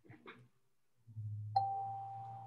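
A single chime-like tone starts suddenly about one and a half seconds in and rings on steadily over a low hum.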